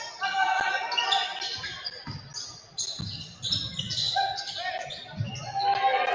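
Live basketball game in a large gym: the ball bouncing on the hardwood court, with players' and crowd voices. Several low thuds fall in the second half.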